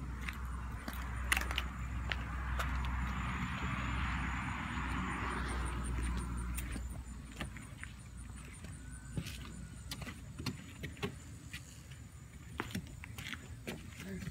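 A road vehicle passes nearby: its tyre and engine noise swells over the first few seconds and fades away by about halfway through. Scattered clicks and rustles of footsteps and handling run throughout.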